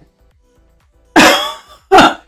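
A woman's short laugh: a breathy burst about a second in, and a second brief one near the end.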